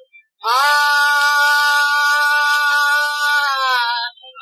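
Male Hindustani classical vocalist holding one long, steady note in a tarana in raag Malkauns, entering after a brief pause and dipping slightly near the end. The note comes from an old 78 rpm shellac disc, thin in the low end under a steady surface hiss.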